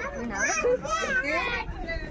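Conversational talk: women's voices and a child's voice talking over one another, with no other distinct sound.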